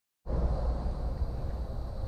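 Outdoor ambience: a steady, slightly fluctuating low rumble with faint hiss, starting a moment after the audio begins.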